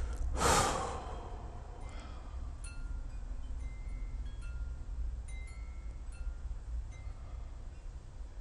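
A man's sigh: one loud, breathy exhale about half a second in. It is followed by a pause filled with a steady low hum and a few faint, short, high tinkling tones.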